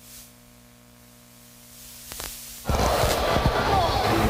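Faint steady hum, then about two-thirds of the way in a sudden loud rush of race car engines and tyre noise as the cars run close by.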